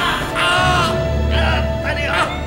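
Two men crying out in pain, several short, high, strained screams over background music with a steady bass line.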